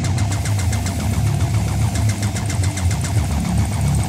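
An engine-like running sound with a deep rumble and a fast, even pulse, set between passages of an electronic rock track.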